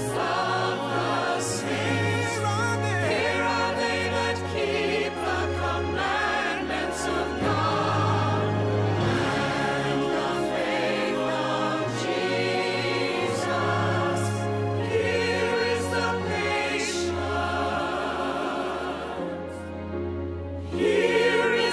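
A mixed vocal ensemble singing a slow Christian hymn-style song in harmony, the voices held with vibrato, over instrumental accompaniment with sustained bass notes.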